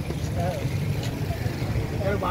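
A steady low rumble with a few faint voices of people talking nearby, one short phrase about half a second in.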